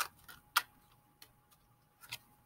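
Tarot cards handled and shuffled by hand: a few sharp card clicks, the loudest about half a second in, then a faint one after about a second.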